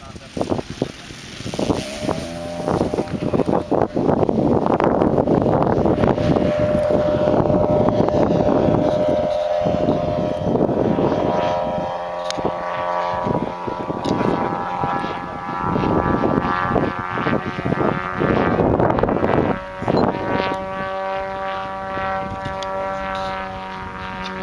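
The 200 cc engine of a large-scale model PZL-106 Kruk tow plane running at high throttle while towing a 3.3 m Zagi flying-wing glider aloft. It is a steady, droning engine note that swells to full loudness over the first few seconds. Gusts of wind buffet the microphone throughout.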